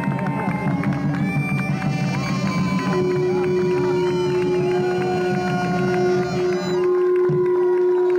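Bagpipes playing a melody on the chanter over a drone, with a steady drone note coming in about three seconds in.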